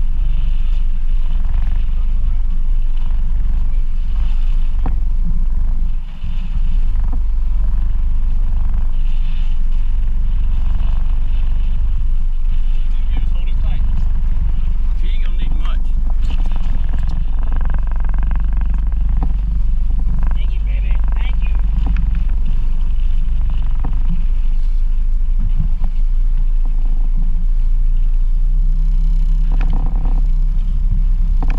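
Steady low rumble of wind buffeting the microphone on a small boat in choppy water, briefly dipping about six seconds in.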